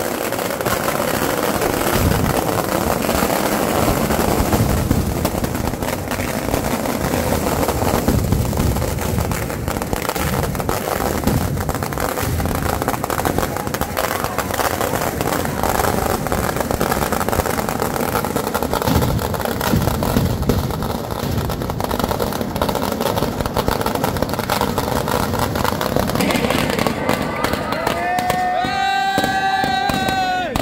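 A long string of firecrackers bursting in rapid, unbroken succession, a dense crackle of bangs. Near the end a wavering pitched tone sounds over the crackle.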